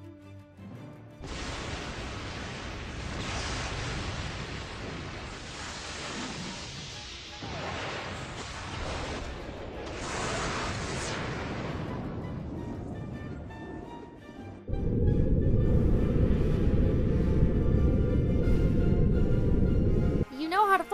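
Sci-fi spacecraft sound effects: a long rushing noise starts about a second in and swells and eases. Near the three-quarter mark it gives way abruptly to a much louder, steady low rumble, with a music score beneath.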